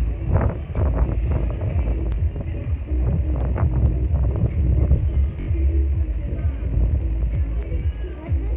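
Wind buffeting the microphone with a heavy, steady rumble, over background music.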